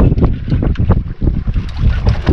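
Wind buffeting the microphone on a small boat at sea: a loud, gusty low noise.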